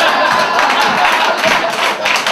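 Comedy club audience laughing and clapping in response to a punchline, a dense spread of many hand claps and voices.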